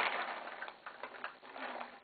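Paintballs clicking and rattling as they settle into a Halo B hopper through a Virtue Crown silicone-finger speedfeed. The clicks thin out and grow quieter as the load comes to rest.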